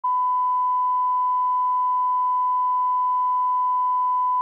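Broadcast line-up test tone: a single steady, unchanging pure pitch that starts right away and holds without a break.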